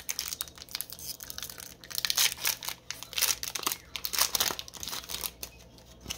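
Foil wrapper of a Pokémon booster pack crinkling and tearing as it is opened by hand, in rapid crackles that die down about five seconds in once the cards are out.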